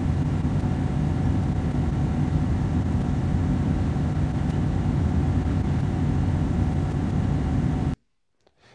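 A freight train of flatcars rolling past on the track, a steady low rumble.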